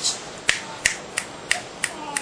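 Five sharp clicks in an even rhythm, about three a second.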